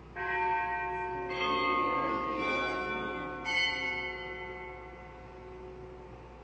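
Altar bells struck three times, the rings overlapping and dying away. They mark the elevation of the consecrated host at Mass.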